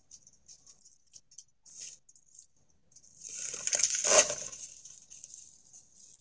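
Trail-camera audio of a raccoon at a wire cage guarding an acorn seed tray: light, irregular scratching and patter, then a louder scraping rustle about three to five seconds in.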